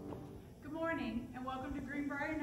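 Music dies away at the start, then a woman begins speaking into a microphone about half a second in.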